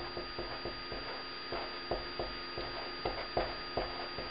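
Pen writing on paper: a run of short, irregular scratching strokes, with a steady electrical hum underneath.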